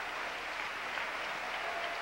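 Congregation applauding steadily, a continuous even wash of clapping.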